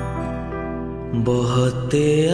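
Music: sustained chords on an electronic keyboard, with a male singing voice coming in a little after a second in.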